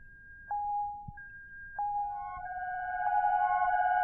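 Electronic music: steady synthesizer tones come in one by one, about half a second and just under two seconds in, over a faint hiss. They build into a louder held chord with a short higher note repeating about every second and a bit.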